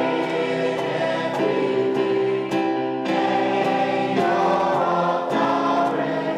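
A worship song sung with electric keyboard accompaniment, the held chords changing every second or so.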